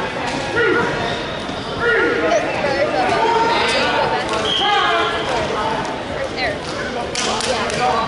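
Indistinct voices of spectators and coaches talking over one another in a large, echoing gym, with a few sharp knocks near the end.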